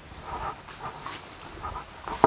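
Several short whines from an animal, one after another.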